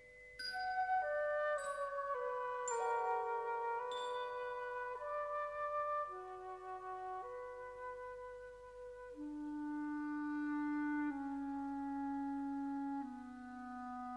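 Orchestral incidental music: four bell-like struck notes ring out in the first four seconds over held wind chords, followed by slow sustained chords. About nine seconds in a low note enters and steps down twice.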